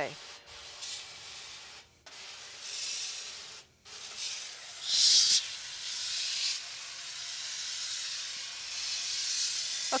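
Hand sprayer on a garden hose hissing as it jets cold water onto photoresist film on a washout board, washing out the stencil. The spray cuts off briefly twice, about two and about four seconds in, and is loudest about five seconds in.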